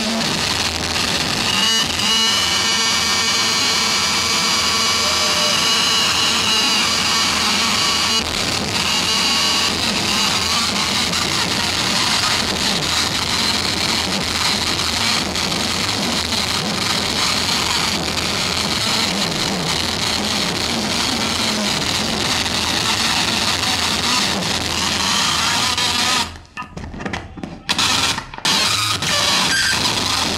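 Live harsh noise music played loud through a PA: a dense, continuous wall of noise with layered high whining tones. About four seconds from the end it cuts out suddenly in two brief gaps, then comes back.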